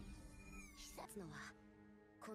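Very faint anime dialogue, a voice speaking over quiet background music from the episode's soundtrack, with a gliding pitch about half a second to a second in.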